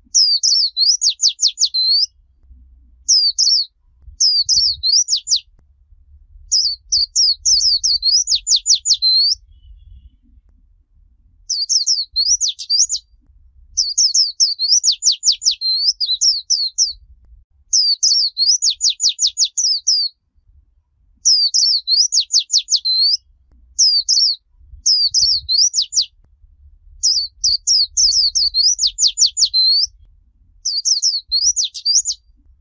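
A white-eye (vành khuyên) singing its 'líu chòe' song: high, fast warbling phrases, each running into a rapid trill, repeated over and over with short pauses between.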